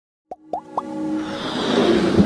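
Intro music for an animated logo: three quick upward-sliding plop sounds, then a swelling electronic build that grows louder.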